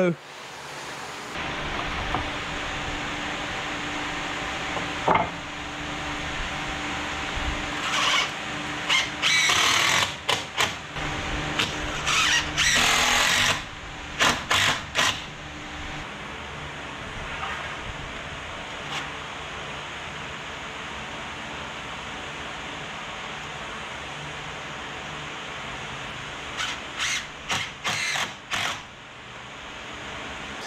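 Power tools working pressure-treated lumber. A steady machine run through the first half has louder short bursts in its middle. Near the end come several short bursts of a cordless drill driving screws.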